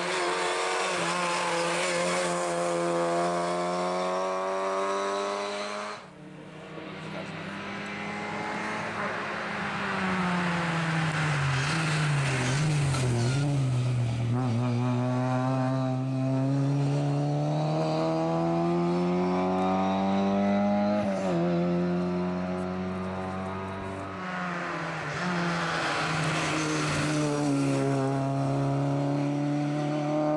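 Rally car engines revving hard on a night stage, the engine note climbing and falling with throttle and gear changes as the cars approach and pull away.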